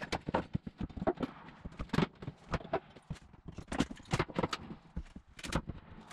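Irregular hollow knocks and clatter on a plywood subfloor, several a second: work boots stepping across the boards and a pry bar knocking against the wood.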